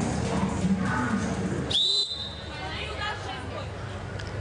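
Referee's whistle: a single short blast about two seconds in, pitching up quickly and holding for about a third of a second before cutting off. It signals the server to serve. Stadium music and crowd chatter come before it.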